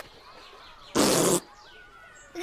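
A short cartoon squelch sound effect about a second in, lasting under half a second: SpongeBob's spongy body being poked and squeezed by Sandy's hand.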